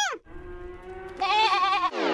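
Transition sound effect over a number title card: a quick downward swoop, then a held pitched cry that grows louder and wobbles in pitch about a second in, sliding down into a falling glide at the end.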